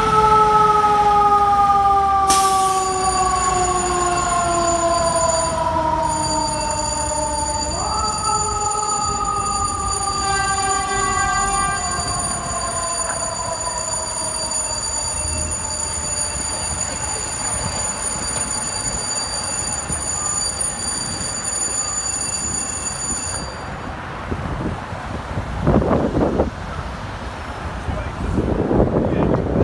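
Fire engine's siren with its pitch falling slowly. It is wound back up once about eight seconds in, then falls again and fades into traffic noise as the engine pulls away. A couple of louder low rumbles come near the end.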